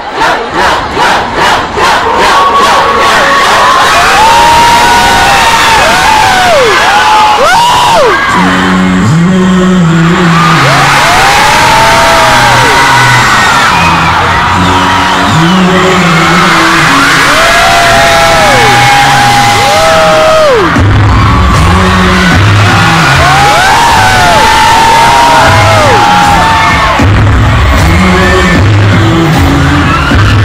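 A large concert crowd screaming and cheering, chanting in rhythm at first, as the show's opening music starts under it: a stepped bass line comes in about a third of the way through and a heavy bass beat about two-thirds of the way through.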